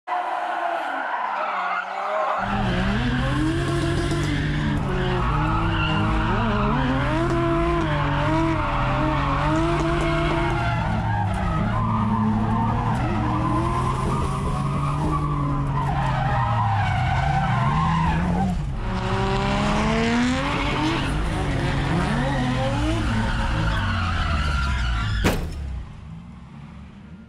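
BMW E46 325i's straight-six engine revving hard through a drift, its pitch rising and falling continually, with tyres squealing. The revs dip and climb again about three-quarters of the way through, and a sharp click near the end is followed by the sound dropping away.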